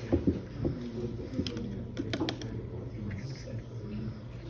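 A paintbrush dabbing watercolour onto paper, giving a few scattered light taps and clicks over a steady low hum.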